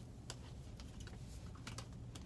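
Faint handling noise: a few soft clicks and light rustle as a cotton dress is lifted and folded.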